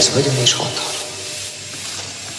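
Breakdown in a minimal techno track: the beat drops out, a short voice snippet comes in, and a noisy rubbing texture then fades.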